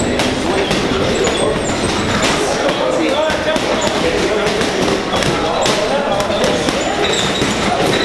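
Boxing gloves striking heavy bags: many irregular thuds and slaps over the steady din of a busy boxing gym, with indistinct voices in the background.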